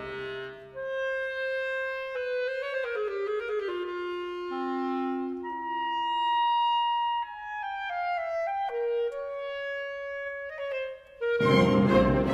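Clarinet and basset horn playing an unaccompanied duet of long held notes. The full orchestra falls away about a second in and comes back in just before the end.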